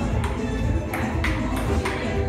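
Table tennis ball clicking off paddles and table in a rally, a sharp tick every half second or so, over background music with a steady beat.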